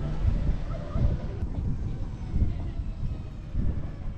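Open-sided farm tram driving along a path, its running noise heard from the rear bench with uneven low rumble from wind buffeting the microphone.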